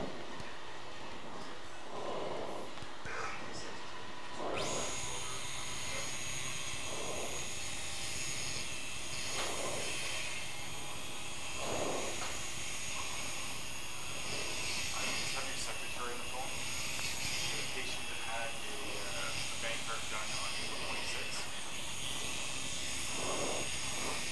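Operating-room background: a steady low hiss, joined about five seconds in by a faint, thin high whine from the arthroscopic burr's motorised handpiece as it shaves excess bone from the hip. Faint voices come and go.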